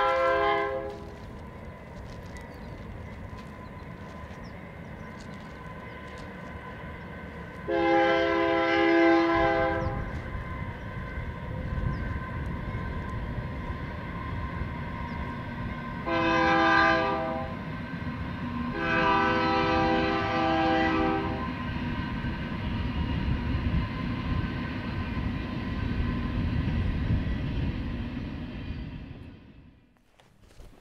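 Train horn sounding over the steady rumble of a passing train: a blast ending about a second in, then a long blast, a short one and a long one, the pattern of a grade-crossing signal. The rumble fades out near the end.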